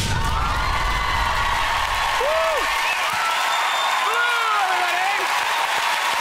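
Studio audience applauding and cheering at the end of a pop song, with several rising-and-falling whoops. A low rumble dies away about two seconds in.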